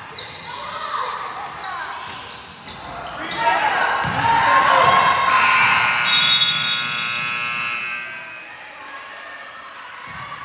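Indoor basketball play echoing in a gymnasium: a ball bouncing on the hardwood, sneakers squeaking and voices calling out. The sound is loudest from about three to eight seconds in.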